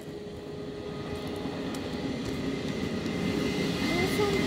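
JR Freight EH200 "Blue Thunder" electric locomotive hauling a container freight train as it approaches, its running noise growing steadily louder.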